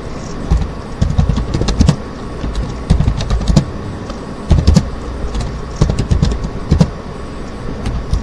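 Computer keyboard being typed on, irregular keystrokes with low thumps coming through the desk, over a steady background hum.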